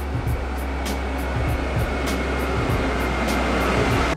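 ÖBB class 1216 electric locomotive drawing a train into a station platform: a steady low rumble that grows slightly louder as it approaches, with a faint thin whine. Background music with a regular ticking beat plays over it.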